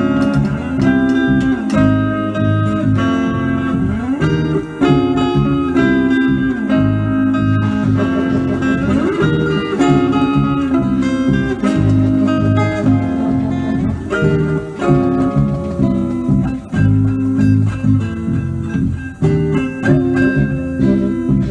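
An electric guitar and a saxophone play improvised jazz together as a duo. The lines are made of held, changing notes, with a rising pitch glide a little before the middle.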